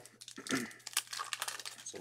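Crinkling of card-pack wrapping being handled, with a scatter of small clicks and rustles.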